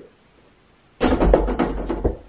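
Over-the-door mini basketball hoop rattling against the door as a tossed toy strikes it: a loud, rapid clatter of knocks starting about a second in and lasting about a second.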